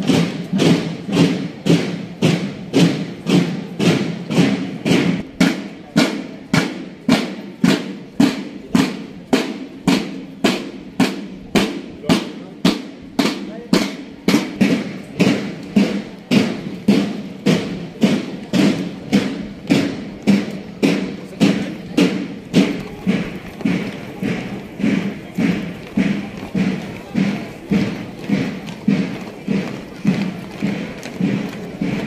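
A marching drum beating a steady parade cadence of about two strokes a second.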